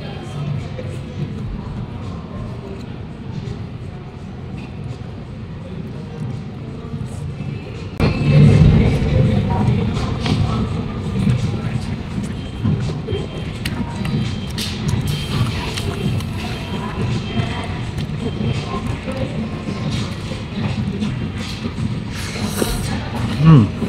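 Background music with people talking in the background, becoming louder about eight seconds in.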